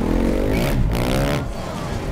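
Dirt bike engine revving hard, its pitch sweeping up and down, then dropping away after about a second and a half.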